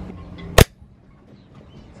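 One sharp, very loud crack about half a second in, cut off at once, after which the steady low hum in the background drops away.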